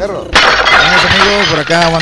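A sudden loud crash of shattering glass, used as a sound effect at a scene change; it starts abruptly about a third of a second in and eases off over about a second and a half.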